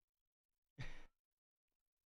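A man's short breathy sigh or exhale about a second in; otherwise near silence.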